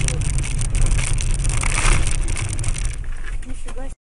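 Steady low rumble of a moving car, with a person's voice briefly near the end; the sound cuts off abruptly at the very end.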